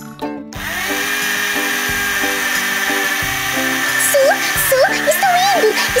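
Cordless drill running steadily with a blade attachment spinning inside a watermelon, churning the pulp into juice. It starts about half a second in.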